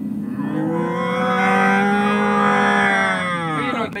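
A man's voice doing a Chewbacca (Wookiee) roar, one long held growling cry of about three seconds that falls away at the end.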